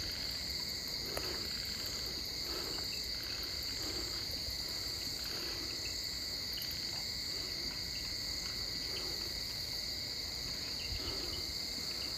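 Night insects, mainly crickets, chirping as a steady, continuous high-pitched chorus.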